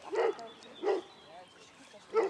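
A dog barking twice, short single barks about two-thirds of a second apart, part of a steady run of barking.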